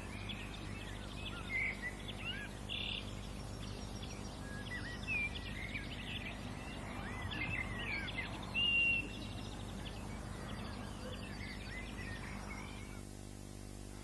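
Songbirds chirping and singing in short, scattered phrases, several at once, thinning out near the end, over a steady low hum.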